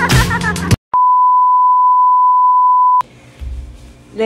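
Music with singing cuts off abruptly, and after a brief silence a single steady beep tone, like a censor bleep, holds on one pitch for about two seconds before cutting off.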